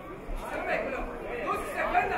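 Chatter of several voices from the ringside crowd, talking and calling out over one another.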